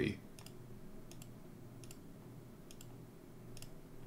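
Faint computer mouse clicks, about five of them a little under a second apart. Each is a quick double tick of the button pressed and released, over a low steady hum.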